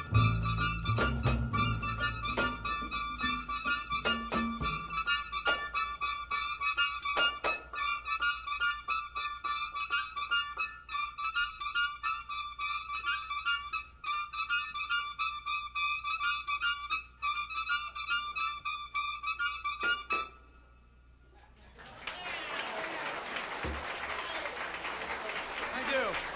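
Live big-band jazz in an odd meter: repeated high held notes over light percussion clicks, ending abruptly about 20 seconds in. After a moment of near silence, the audience applauds.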